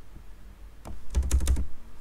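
Computer keyboard being typed on: a quick run of key clicks with a dull low thump about a second in.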